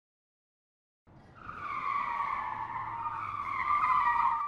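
Pinewood derby cars rolling down an aluminium track: the wheels set up a steady whine that starts about a second in and grows louder as the cars pick up speed.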